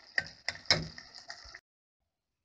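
A utensil knocking a few times against an enamel pot while stirring simmering tomatoes, over a steady sizzling hiss. The sound cuts off abruptly about a second and a half in.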